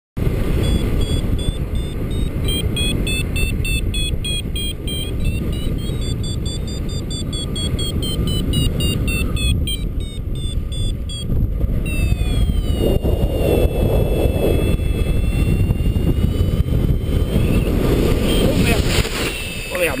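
Paragliding variometer beeping over heavy wind rush on the microphone. The variometer gives quick regular pulses of high beeps for the first half, then a few seconds later a continuous tone that slides slowly down in pitch: the vario's climb signal, then its sink tone.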